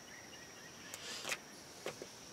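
Quiet outdoor ambience: a steady high-pitched insect drone, with a few faint short ticks about a second in and again near the end.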